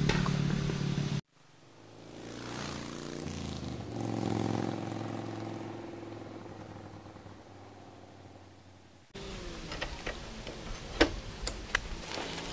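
Motor scooter engines running, in edited pieces. A loud engine sound cuts off suddenly about a second in. Then a scooter engine grows louder over a few seconds and slowly fades. In the last few seconds a steady engine hum runs on, with scattered sharp clicks.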